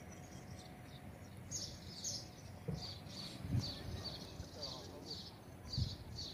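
A small bird chirping repeatedly, short high notes about two a second, over outdoor background noise with a few low thumps.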